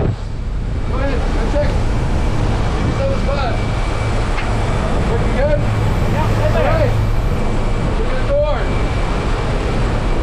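Steady rushing wind and the drone of the propeller engine through the open door of a small jump plane in flight, with brief voices breaking through the noise now and then.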